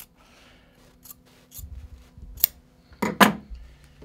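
Steel fabric scissors cutting folded decorative fabric along the fold: a few sharp, scattered snips, the loudest about three seconds in, with a couple of dull bumps.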